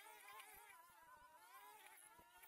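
Distant petrol string trimmers cutting weeds, a faint buzzing whine whose pitch wavers up and down as the engines load and ease off in the growth.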